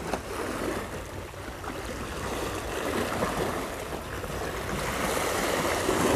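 Sea waves washing and breaking against shoreline rocks: a steady wash that swells and eases.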